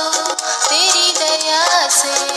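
Hindi Christian devotional song: a held accompaniment chord with a steady ticking beat, and from about half a second in a sung line that wavers and bends in pitch.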